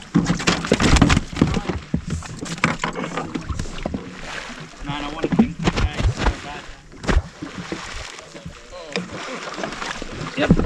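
Water slapping and sloshing against the hull of a jet ski at rest, mixed with knocks and handling sounds, loudest about a second in.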